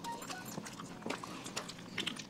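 Faint, scattered mouth clicks and soft chewing as people eat burgers close to the microphone.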